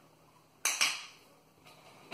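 A handheld training clicker pressed once, giving a sharp click-clack a little over half a second in. It marks the rat touching the target stick, the signal that a treat is coming.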